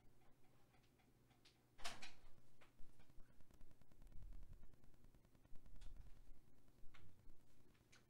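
A few faint clicks and knocks, the sharpest about two seconds in, with low dull thuds from about four seconds on.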